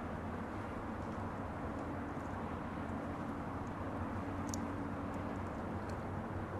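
Steady low background rumble and hum, even in level, with a faint light click about four and a half seconds in.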